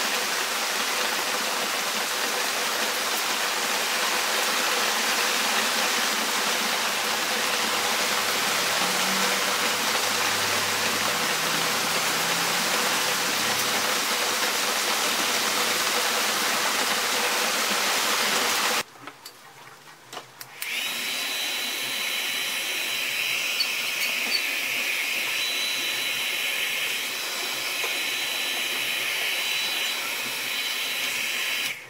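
Small electric hair dryer running steadily, a rushing air noise with a faint hum. About two-thirds of the way through it cuts out for about two seconds, then a steady rushing noise returns with a thin high whine on top.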